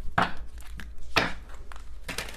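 A deck of tarot cards being shuffled and handled: two short, soft papery strokes about a second apart over a low background hum.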